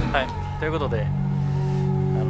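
Brief talking voices over soft background music holding steady low chords.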